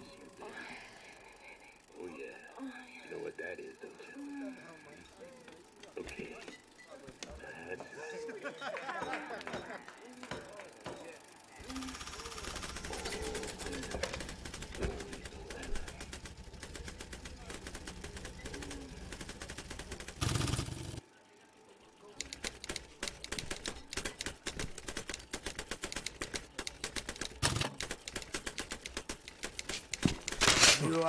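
Indistinct voices and murmur, then a single loud thump about two-thirds of the way in and a brief hush. After that the keys of a telex machine clatter in fast, uneven strokes as a message is typed out.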